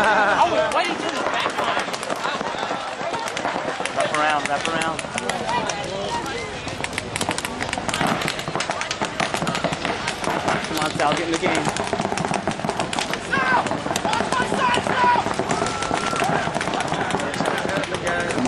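Paintball markers firing: many sharp pops in quick, irregular succession, thickest in the middle, with shouting voices coming and going.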